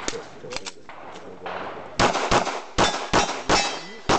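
A fast string of pistol shots beginning about halfway through, with steel popper targets ringing as they are hit.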